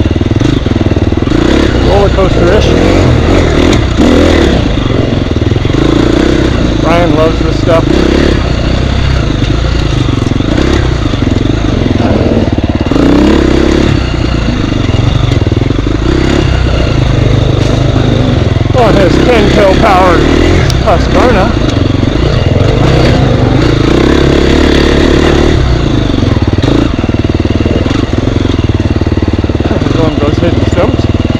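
Off-road dirt bike engine running on a rough forest trail, its revs rising and falling as the rider works the throttle, with a steady rumble of wind and knocks on the helmet-mounted microphone.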